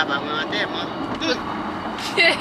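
Steady road and engine noise inside a moving car's cabin, with soft voices briefly near the start and again around the middle.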